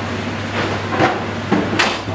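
Stainless-steel kitchen oven being shut and set: a small knock about a second in and a sharp metallic clack near the end as the door closes and the control knob is turned, over a steady noise.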